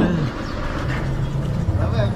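A man's short falling "aa" at the start, then street background: scattered voices and the low hum of a vehicle engine that grows stronger near the end.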